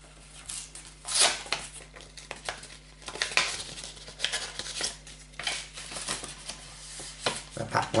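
Kraft paper envelope being opened and handled, with irregular bursts of paper rustling and crinkling. Near the end, sticker sheets slide out of it.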